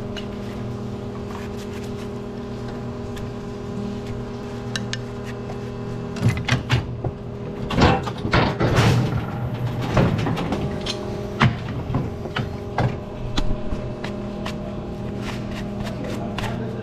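Steady hum of a hydraulic hoof-trimming chute's pump running, with loud metal clanks and knocks from the chute and the cow's hooves from about six seconds in until about thirteen seconds, as one leg is let down and another hoof is lifted and strapped.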